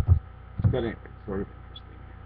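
Steady electrical mains hum, with a man's voice making a few short, indistinct utterances about half a second in and again around a second and a half.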